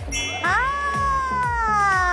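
A long, high-pitched drawn-out cry starting about half a second in, rising briefly and then falling slowly in pitch, over background music with a steady beat.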